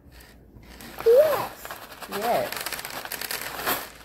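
Plastic bag of pony beads crinkling as the beads are tipped and shaken out of it, a rustle lasting about three seconds. Two short vocal sounds come about one and two seconds in.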